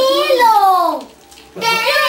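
A small child's high voice in a drawn-out whining cry that falls in pitch, then, after a short pause, a brief high cry near the end.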